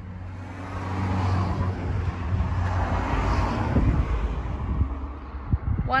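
A motor vehicle going past: its noise swells and then fades over a low steady hum, with a few short knocks near the end.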